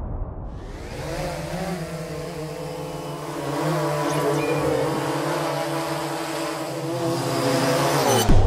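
Quadcopter drone's motors and propellers buzzing in a steady hover, a stack of wavering tones that grows a little louder about halfway through.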